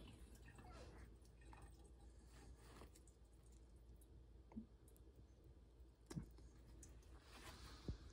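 Near silence: room tone with a few faint clicks of an oyster shell being handled, spaced a second or two apart.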